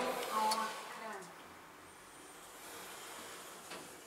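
Kone EcoDisc elevator car setting off upward after a floor button press: a quiet, steady running hum in the cab with a thin high whine about two seconds in.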